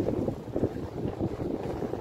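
Wind buffeting the microphone: an irregular low rumble that gusts up and down, with a brief knock right at the start.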